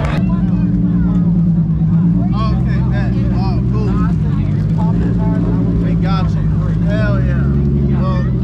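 Nissan 350Z's swapped-in VQ35HR 3.5-litre V6 idling steadily just after a burnout, with the engine running hot.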